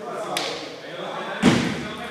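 Table tennis rally: a sharp click of the ball off a bat or the table, then a louder, deeper thump about a second and a half in.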